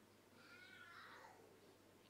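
Near silence: room tone, with one faint, high-pitched, wavering cry about half a second in, lasting about a second.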